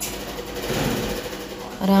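Clear plastic zip-lock bag rustling and crinkling as hands handle and press it. The sound swells toward the middle, then fades as speech begins near the end.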